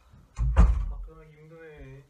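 A room door shutting with a loud thud about half a second in, followed by a man's brief wordless vocal sound.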